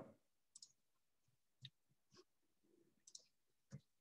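Near silence broken by about five faint, scattered clicks of a computer mouse.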